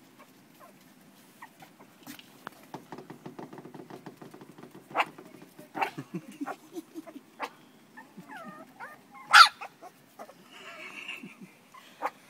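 Four-week-old Jack Russell terrier puppies playing and scuffling on a wooden deck: a patter of small claws and bumps on the boards, a few thin whimpers, and one loud high yip about three-quarters of the way in.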